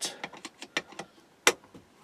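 Screwdriver loosening a bolt on a cast aluminium dowel-making jig: a few light metal clicks and scrapes, with one sharp click about one and a half seconds in.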